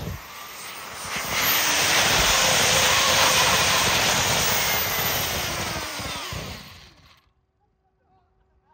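Turbocharged wood fire running with a loud, jet-like rush of forced air and flame, with a faint whine gliding up and down in pitch. It fades about six seconds in and cuts to near silence shortly after.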